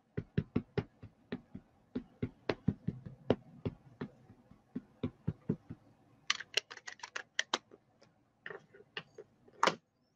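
Rubber stamp on a clear acrylic block tapped over and over onto an ink pad to ink it: a steady run of sharp taps, two or three a second. About six seconds in comes a quicker, brighter clatter of taps, and there is one louder knock near the end.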